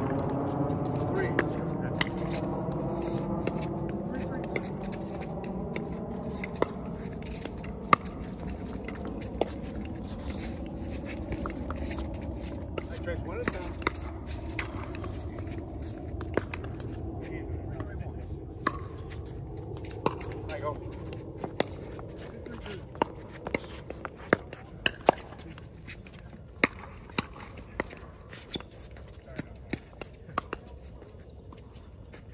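Sharp, irregular pops of pickleball paddles striking a plastic ball, coming more often in the second half. A low droning hum slowly falls in pitch and fades over the first part.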